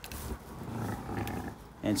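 Quiet handling sounds in a straw-bedded sheep pen as a rectal thermometer is drawn out of a ewe, with a faint low call from a sheep; a man starts to speak near the end.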